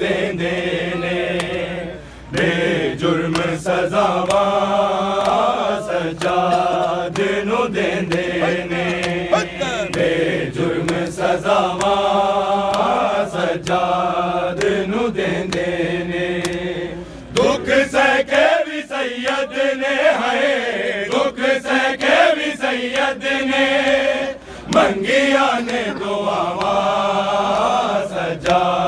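Men's voices chanting a Punjabi noha, a Shia lament for Imam Sajjad, in unison as a live group recital. In the second half, sharp rhythmic slaps of chest-beating (matam) join the chant.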